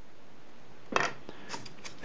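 A short pencil scratch and click about a second in, then a few light taps, from marking a wooden popsicle stick against a wooden ruler and then shifting the ruler.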